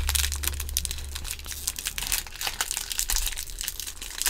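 Plastic foil wrapper of a baseball card pack crinkling as it is handled, a dense run of small irregular crackles over a steady low hum.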